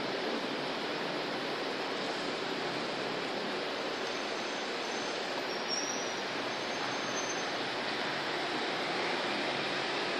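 A steady, even hiss throughout, with faint high squeaks of a marker writing on a whiteboard from about four to seven seconds in.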